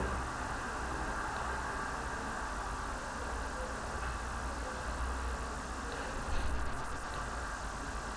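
Steady low background hum with faint hiss, with a few faint clicks about six and a half seconds in.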